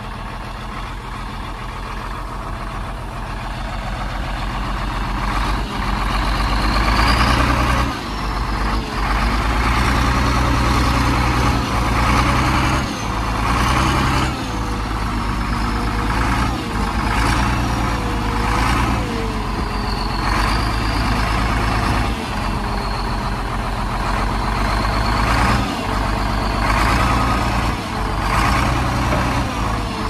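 1980s Prinoth snow groomer's engine running as the tracked snowcat reverses in close, growing louder over the first several seconds and then holding steady. Brief dips and knocks come every second or two.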